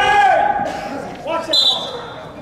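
A loud shout from the sidelines of a wrestling bout in a gym hall. About one and a half seconds in, a short high-pitched squeak follows.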